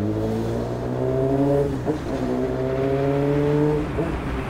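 Honda Hornet motorcycle's inline-four engine accelerating hard, its pitch climbing steadily. The pitch dips briefly at an upshift a little under two seconds in, climbs again, and drops at another upshift at the very end.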